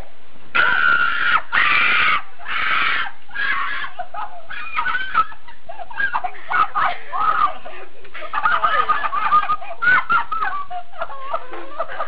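High-pitched screaming: four loud shrieks in the first few seconds, then high, wavering cries and excited voice sounds.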